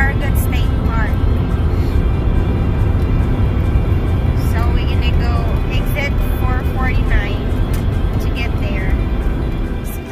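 Steady low rumble of road and engine noise inside a car cruising on a highway, with music and a singing voice over it.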